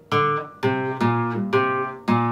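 Flamenco guitar with a capo playing single notes of a bulería falseta in E (por arriba), slowly and one at a time: about four notes roughly half a second apart, each left ringing.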